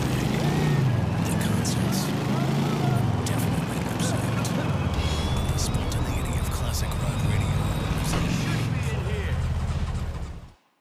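A video-game chopper motorcycle's engine runs continuously as it is ridden, its pitch rising and falling with the throttle.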